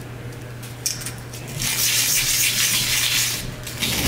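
A laser-cut keychain pendant rubbed on a sanding block: a light click about a second in, then a dry, gritty scraping that lasts nearly two seconds, over a steady low hum.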